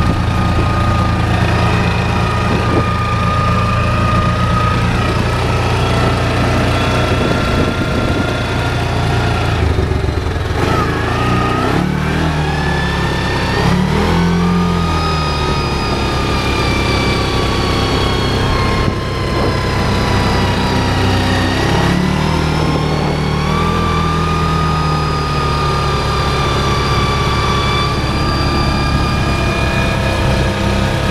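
Yamaha Rhino UTV's single-cylinder engine running under way, dropping back about ten seconds in, then speeding up again, easing off, and picking up once more just past twenty seconds. A high whine rises and falls with it; the owner says the axle sounds bad now, after the vehicle was flooded in a river.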